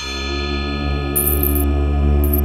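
Eerie suspense background music: a sustained low drone with ringing, bell-like tones, and a brief high jingle about a second in.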